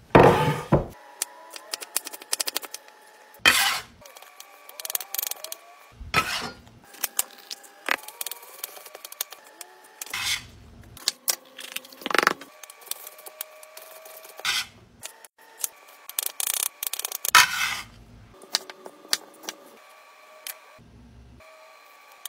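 Chef's knife cutting vegetables on a wooden cutting board: scattered knocks of the blade on the wood and short scraping strokes, in bursts spread through.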